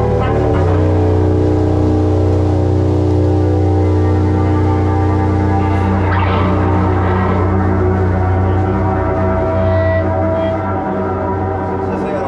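A live doom/stoner band holds a heavy sustained drone: low held notes and a chord ringing on with no drum hits, getting slightly quieter near the end.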